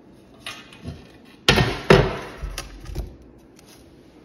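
A loose glass panel knocking and clunking against a countertop as it is handled and laid down flat: a few sharp knocks, the loudest two close together about one and a half and two seconds in, then lighter taps.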